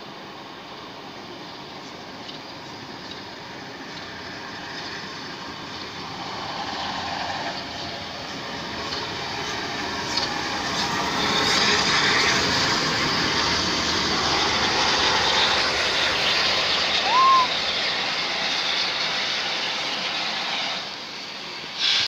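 GWR Castle-class steam locomotive 5043 Earl of Mount Edgcumbe and its coaches drawing in alongside the platform. The noise of the train builds from about six seconds in, is loudest as the engine and coaches pass, and falls away shortly before the end. A brief high note sounds about seventeen seconds in.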